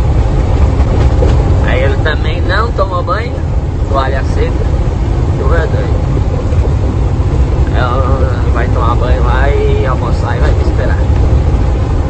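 Steady low rumble of a truck's engine and tyres on a wet highway, heard from inside the cab while driving in the rain.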